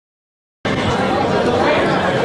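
Dead silence, then about two-thirds of a second in the sound cuts in abruptly: many voices of players and onlookers chattering and calling at a small-sided football match.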